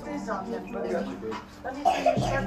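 Indistinct voices talking in the background, quieter than the speech on either side.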